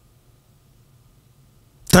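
A pause holding only faint room tone, then a man starts speaking into a studio microphone near the end.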